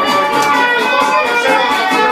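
Cretan lyra playing a bowed melody over a plucked-string accompaniment, with a steady strummed beat.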